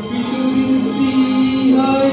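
A man singing a Bengali song into a microphone over a PA, holding one long note, with live acoustic guitar accompaniment.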